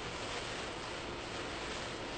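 Steady background hiss of room noise, even and unchanging, with no distinct knocks, rustles or voice.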